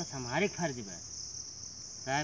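Insects chirring steadily, a continuous high-pitched buzz, with a man's voice over it in the first second.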